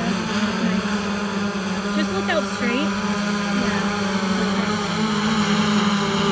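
DJI Phantom 4 Pro quadcopter hovering overhead, its propellers giving a steady, even hum at one pitch with higher overtones.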